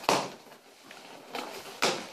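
A cardboard shipping box being opened by hand: its flaps are pulled open and the packaging inside is handled. There are two sharp rustling scrapes, one at the start and one near the end, with a softer one between them.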